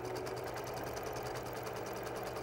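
Singer electric sewing machine running steadily, its needle stitching a seam through quilted blocks with a fast, even rhythm.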